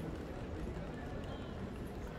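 Footsteps of someone walking on stone paving, over a steady low rumble, with faint voices of passers-by.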